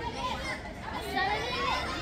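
Young voices shouting and calling out over one another, as players and onlookers do during a match.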